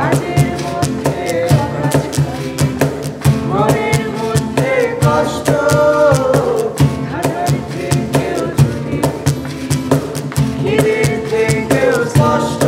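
Live acoustic performance of a Bengali song: several voices singing together over acoustic guitar and a steady hand-played beat on a cajón.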